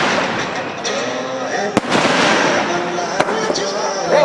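Fireworks display: aerial shells bursting, with two sharp bangs, one a little under two seconds in and another about three seconds in, over a continuous dense noise.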